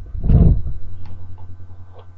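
Handling noise on the webcam microphone: a loud, low rustling bump that peaks about half a second in and dies away over the next second. A steady low hum runs underneath.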